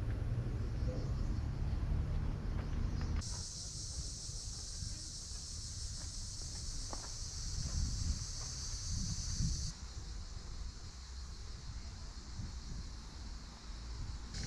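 Cicadas buzzing in a steady high-pitched drone that starts abruptly about three seconds in and cuts off about six seconds later, over a low rumble that runs throughout.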